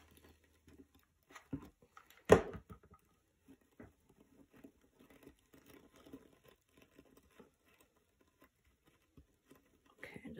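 Faint crinkling and scattered small ticks of a copper mesh scouring pad being squeezed and pressed down by hand, with one sharp knock a little over two seconds in.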